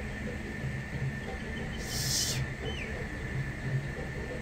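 A steady mechanical hum with an even low throb about three times a second and a thin steady whine above it. A short hiss comes about two seconds in, followed by two short falling chirps.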